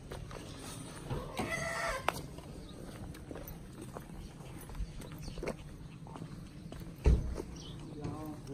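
A chicken gives one short call about a second and a half in, over footsteps on dry dirt. A heavy low thump comes near the end.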